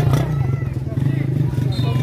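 Spectators' voices and shouts around a basketball game, over a steady low hum.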